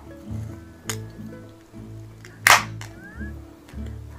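Ring-pull drink can cracked open about halfway through: a small click, then a sharp pop with a short hiss of escaping gas. Background guitar music plays throughout.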